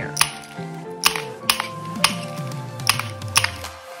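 Wheeled glass nippers snapping strips of fusible glass into small squares: about six sharp snaps at uneven intervals, over background music.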